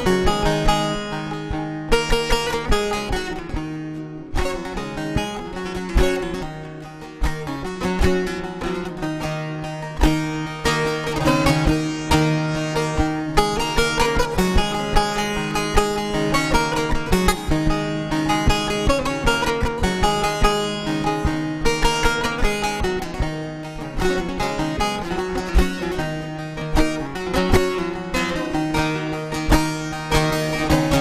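Bağlamas (long-necked Turkish saz) with an acoustic guitar playing an instrumental Turkish folk tune, a steady run of quick plucked notes without singing.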